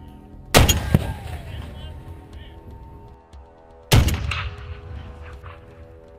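Two shots from a .50 caliber rifle, about three seconds apart, each followed by a fading echo.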